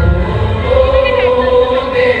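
Bollywood Ganesh vandana dance song, with a chorus singing one long held note over the backing music. The bass beat is strong at first and drops back as the held note comes in.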